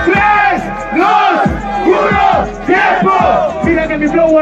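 A crowd of men shouting and yelling together over a hip-hop beat, with repeated deep bass kicks under the voices.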